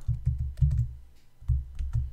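Typing on a computer keyboard: a quick run of keystrokes in the first second, a short pause, then a few more keystrokes near the end.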